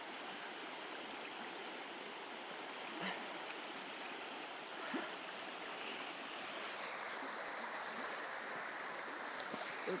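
The Kilchis River running over a shallow riffle: a steady, even rush of water.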